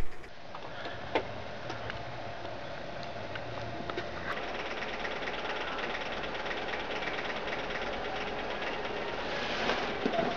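Steady background noise, an even hiss with a few faint clicks.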